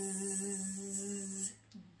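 A woman's voice holding one long, level buzzing hum, an imitation of a bee's buzz, which stops about a second and a half in.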